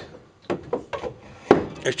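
Broken pieces of a turned wooden box bottom clicking and knocking together in a hand, several short sharp knocks with the loudest about a second and a half in.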